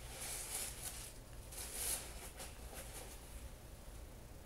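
Faint rustling and scuffing of a leather boat shoe being handled, in two short swells, followed by a few light taps as it is moved onto a shoebox.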